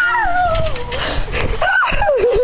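A girl's high, drawn-out squeal that slides down in pitch over about a second, followed by a shorter rise-and-fall cry near the end, over low rumbling from the shaking camera.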